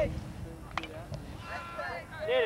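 Voices of players and spectators calling out at a baseball game, with two sharp knocks a little under and a little over a second in.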